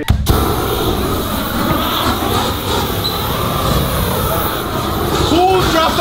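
Handheld flamethrower lit with a sudden burst, then burning with a steady, loud rush of flame. Voices and a laugh come in near the end.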